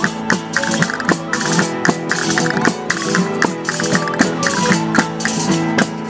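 Spanish street folk band (cuadrilla) playing a Christmas carol (villancico): violins and guitar carry the tune over a steady beat of hand-held frame drums with jingles (panderetas), with a wind instrument joining in.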